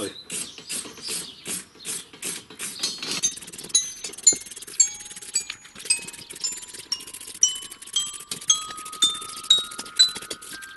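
Hand wire brush scrubbing loose rust off a steel rebar in quick back-and-forth strokes, about two a second. About three seconds in, background music of ringing, bell-like notes comes in over it, stepping upward in pitch.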